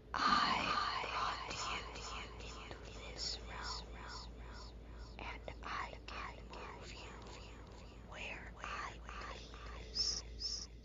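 A voice speaking lines of dialogue in a whisper.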